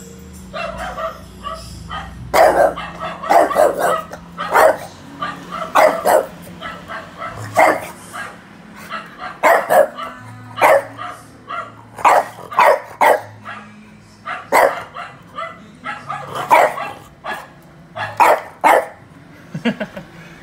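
Recorded dog barking played back through a speaker: short, sharp barks, often two or three close together, repeating irregularly from about two seconds in. Steady low music runs underneath.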